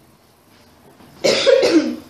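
A person coughing: a short run of coughs starting about a second in and lasting well under a second.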